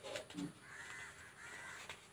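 A crow cawing faintly twice, each caw about half a second long, with a few paper rustles and clicks just before.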